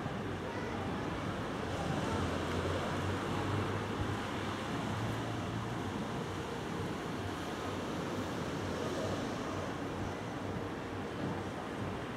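Steady rushing noise of wind on the microphone, with a low rumble from distant fireworks under it that swells slightly a few seconds in; no distinct bangs stand out.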